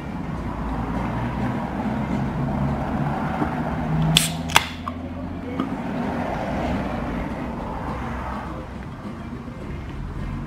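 Handling noise of a camera being picked up and moved around, over a steady low hum. Two sharp clicks come close together a little after four seconds in.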